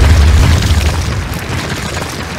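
Sound effect of a wall bursting apart: a deep rumbling boom with crackling, tumbling rubble, fading away.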